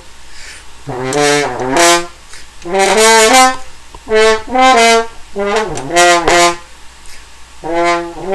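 An Elkhart-made Conn single French horn in F, which its owner takes for a 1921 Director 14D, playing four short phrases of several notes each with brief breaks between them. A longer pause comes before another phrase starts near the end.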